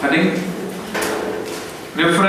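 A man speaking in a classroom, with a short knock or scrape about a second in.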